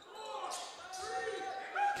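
Sounds of a basketball game in play in a gym: a ball being dribbled on the hardwood court, with faint calls and voices echoing in the hall.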